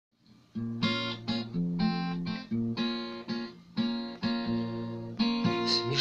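Acoustic guitar strummed as the song's introduction, chords struck about every half second and left ringing, starting about half a second in.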